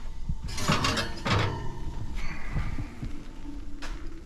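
A glass baking dish being pulled from a wire oven rack and carried to the counter: a burst of metal-and-glass scraping about half a second to a second and a half in, then handling noise, and a sharp knock near the end as the dish is set down.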